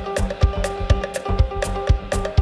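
An acoustic piano, double bass and drum kit trio playing techno-style jazz. The drums keep a steady beat, with a low kick about twice a second and stick strikes on drums and cymbals in between, under a short repeating figure of pitched notes.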